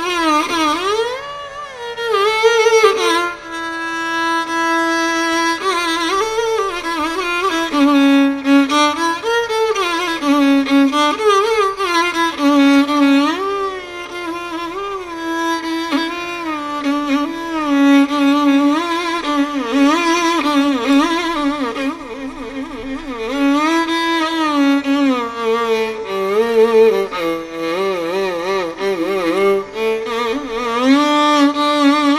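Carnatic violin playing a melodic line in raga Keeravani, its notes wavering and sliding in ornamented oscillations between steadier held notes.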